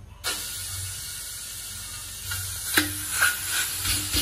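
Pork belly sizzling in a hot steel wok, a steady hiss that starts suddenly just after the start. In the second half a metal spatula clicks sharply against the wok a few times.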